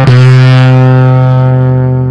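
Semi-hollow electric guitar through a fuzz pedal, one low note held and sustaining for about two seconds, slowly fading.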